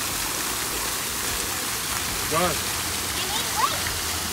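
Water from a tiered fountain falling and splashing steadily into its basin.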